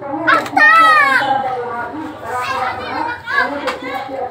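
Children's voices calling out and chattering, with one loud high-pitched child's cry that falls in pitch about a second in.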